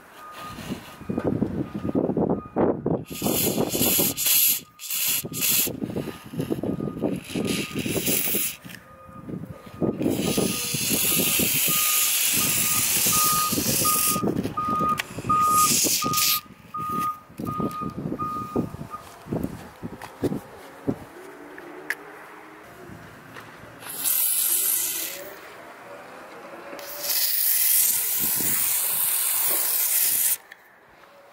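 Aerosol can of WD-40 Specialist silicone spray hissing in several bursts through its straw into a car door's rubber window-glass channel, lubricating a slow power window; the longest burst lasts about six seconds. A vehicle's reversing alarm beeps steadily in the background through the first two-thirds.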